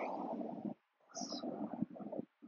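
Soft, low rustling of a person rolling down onto his back on a yoga mat, in two stretches, the second starting about a second in.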